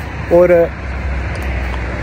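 A motor vehicle going by on the road: a steady rumble of engine and tyre noise that fills the pause after a single spoken word.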